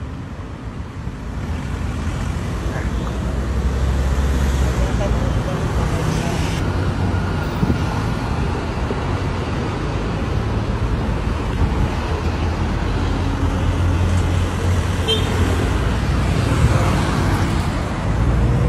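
Steady road traffic noise from cars and other motor vehicles passing close by on a multi-lane road, with a low engine rumble that swells over the first few seconds and then holds.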